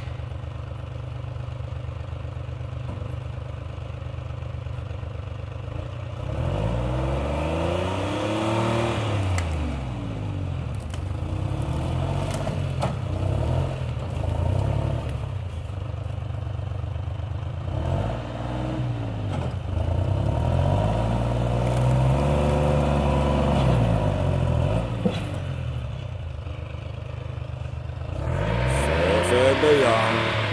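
Timberjack 225 cable skidder's diesel engine idling steadily, then revving up and down again and again from about six seconds in as the machine is driven and manoeuvred.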